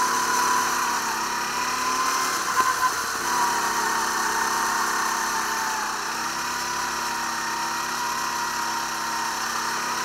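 Go-kart engine running at speed, its pitch wavering slightly up and down with the throttle, heard from the seat of the kart.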